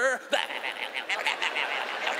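A large audience laughing, with some clapping mixed in. The laughter breaks out just after a spoken punchline ends and carries on steadily.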